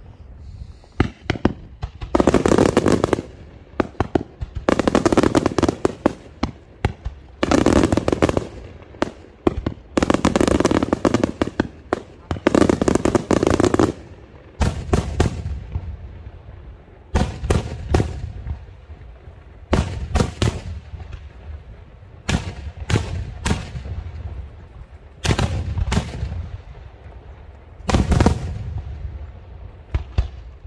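Daytime aerial fireworks shells bursting overhead. About five dense crackling volleys, each lasting about a second, come in the first half, then give way to single sharp bangs, some in quick pairs or threes.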